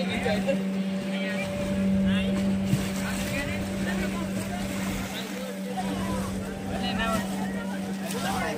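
A steady low hum from an unseen source, with the voices of people bathing in the water over it.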